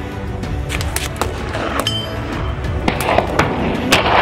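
Background music with a series of irregular sharp gunshot cracks starting about a second in, getting louder toward the end.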